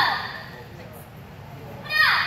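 Two loud shouts, each falling in pitch: the first dies away over the opening half-second and the second starts near the end. They are shouted taekwondo calls during a group form.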